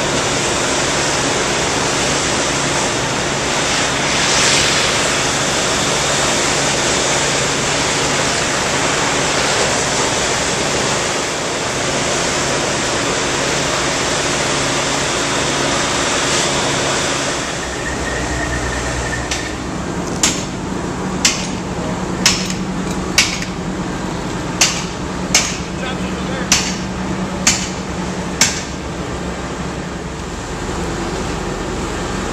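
Steady, loud noise of a large fire scene: fire apparatus running and ladder-pipe water streams pouring onto the burning buildings. Past the middle, the sound shifts to a lower engine drone, with sharp knocks about once a second over the last ten seconds.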